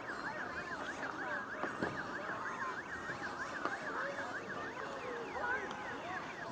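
A siren in fast yelp, its pitch sweeping up and down about four times a second and slowing into longer falling sweeps near the end, over background crowd noise from the rink.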